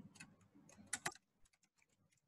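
Faint computer keyboard keystrokes: a few scattered key clicks, the clearest about a second in, stopping about halfway through.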